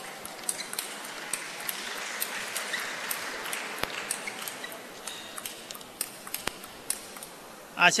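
Table tennis balls clicking off bats and the table in an irregular string of light, sharp knocks, over a low crowd murmur in the hall.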